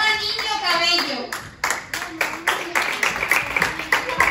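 Applause from many small hands clapping, quick and uneven, with high voices sounding over the claps in the first second and again briefly near the middle.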